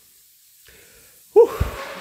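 A person lets out a short, breathy 'ouh' about a second and a half in, a puff of breath that thumps on the microphone.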